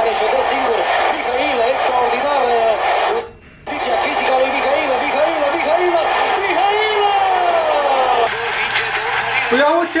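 Speech: a man talking steadily, television football match commentary, with a brief drop-out about three seconds in.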